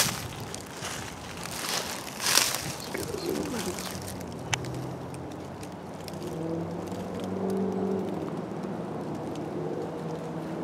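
Footsteps crunching through dry fallen leaves in the first couple of seconds. After that comes a faint low drone made of a few steady pitches.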